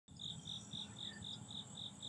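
Crickets chirping in an even rhythm, about four high chirps a second, over a thin steady high insect drone.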